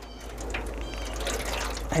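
Boiling water poured from a kettle into an aluminium pan, a steady splashing pour.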